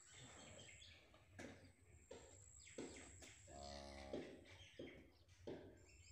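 Faint farmyard ambience: a steady high whine that comes and goes, scattered soft rustles and knocks, and one short low call about three and a half seconds in.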